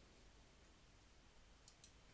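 Near silence: faint room tone, with two quick faint clicks close together near the end.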